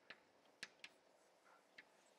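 Near silence broken by about four faint, sharp ticks of chalk against a blackboard as it is written on.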